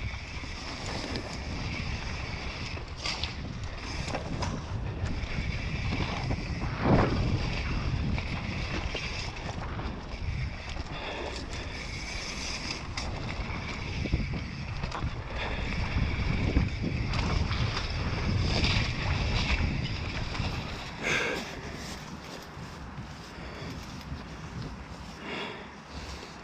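Mountain bike descending a dirt trail: wind rushing over the camera microphone and tyres rolling over leaf-covered dirt, with rattles from the bike and a sharp knock about seven seconds in. It grows quieter over the last few seconds as the bike slows.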